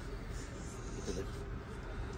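Faint rustle of a clear plastic garment bag as a kurti is pulled out of it, mostly in the first second, over low room noise.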